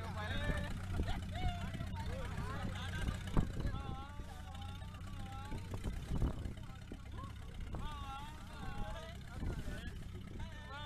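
Indistinct voices, rising and falling in pitch, over a steady low engine hum, with a couple of brief knocks.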